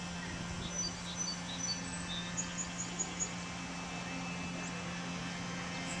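Quiet outdoor ambience: a steady low hum with small, high bird chirps, including a run of about five quick chirps around the middle.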